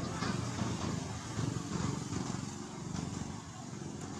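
Low, pulsing rumble of an engine running, rising and falling in level.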